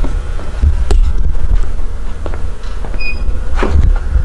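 Loud low rumble of a handheld camera being moved about, with a sharp click about a second in and a few light knocks.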